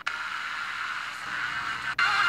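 FM radio receiver tuned between stations, giving hiss with faint traces of a weak signal underneath. The sound cuts out for an instant as the tuner steps to the next frequency.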